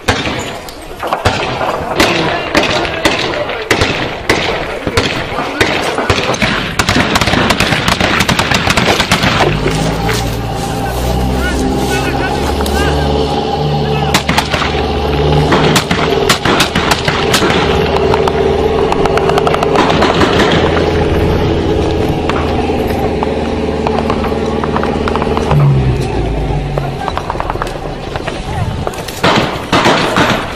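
Gunfire in many sharp shots and bursts, with voices. About ten seconds in, music with a stepped low bass line comes in under the shots and stops a few seconds before the end.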